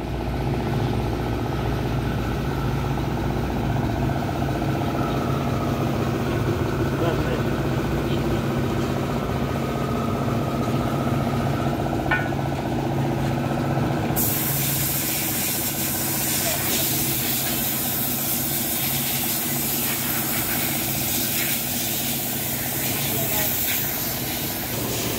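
A steady low machine hum, like an engine or transformer running, with a single light tap about twelve seconds in. About halfway through a loud steady hiss sets in over it and keeps going.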